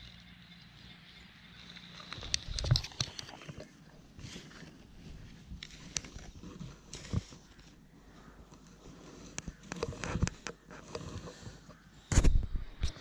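Digging by hand in loose beach sand: irregular scrapes, crunches and small knocks of a hand tool and fingers working the sand to recover a metal-detector target. A faint high steady tone runs through the first few seconds and fades out.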